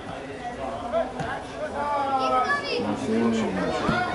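Voices on a football pitch: children calling and shouting over adults talking, with several voices overlapping.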